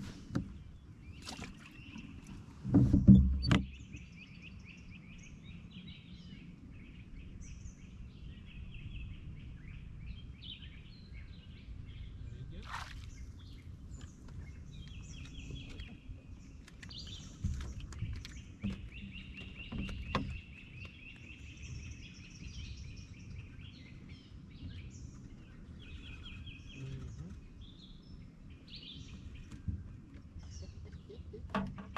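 Small birds singing in quick repeated trills over a low steady rumble. About three seconds in there is a loud thump and a sharp knock on the boat.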